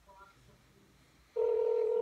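Telephone ringback tone from a cordless phone handset, the call ringing through at the other end: a steady tone that comes in about one and a half seconds in.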